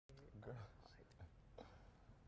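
Faint, hushed speech: a few short murmured or whispered syllables, too quiet to make out, over low room noise.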